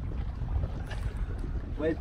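Wind rumbling on the microphone and water rushing past the hull of a small sailboat under sail, with a man's voice starting near the end.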